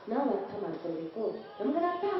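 A woman speaking into a microphone with a strongly rising and falling voice; speech only.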